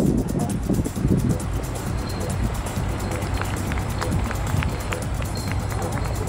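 Outdoor stadium ambience during a track race, with wind rumbling on the microphone and a scatter of faint sharp clicks about halfway through.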